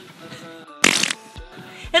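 Faint background music with steady held tones, broken about a second in by one short, loud burst of noise.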